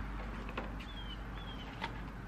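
Faint taps and clicks of cardboard toilet-paper tubes being set into a clear plastic container, with a bird giving two short falling chirps in the background about a second in.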